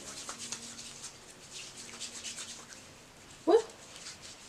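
Hands rubbing lotion into the skin: a soft, faint swishing of palm against palm.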